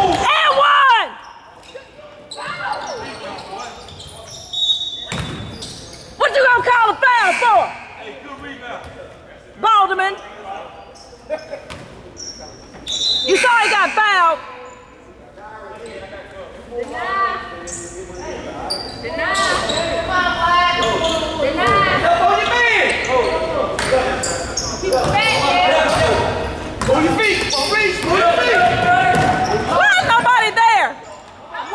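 A basketball bouncing on a hardwood gym court during play, with scattered shouts from players and coaches, all echoing in a large gymnasium.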